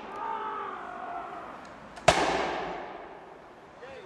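A single black-powder musket shot about two seconds in: one sharp crack whose echo trails off among the trees for over a second.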